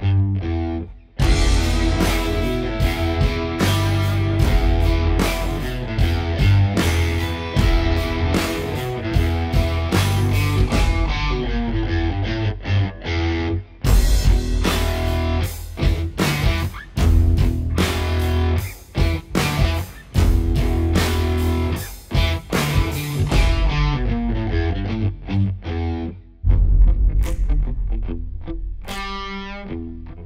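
Background rock music with distorted electric guitar and a steady beat.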